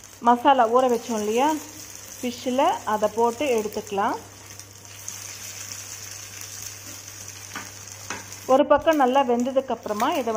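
Marinated fish slices sizzling in hot oil in a non-stick frying pan, a steady hiss throughout. A voice speaks over it in short stretches near the start and again near the end.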